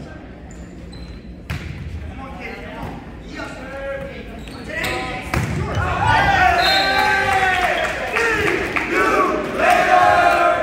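Volleyball rally in a gymnasium: the ball is struck with a sharp smack about one and a half seconds in, with a few more hits and thuds later. From halfway through, many voices of players and spectators shout and cheer, growing louder as the point ends.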